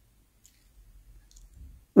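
A quiet pause in a man's talk, with a few faint mouth clicks and a breath before he speaks again.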